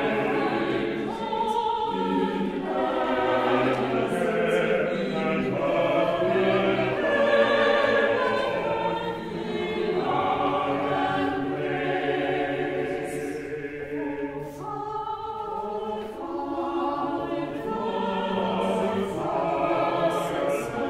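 Church choir singing a series of held notes that move from one chord to the next.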